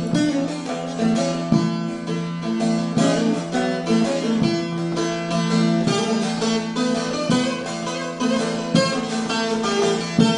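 Bağlama (Turkish long-necked saz) playing the instrumental introduction of a folk song: quick plucked notes over sustained low droning tones.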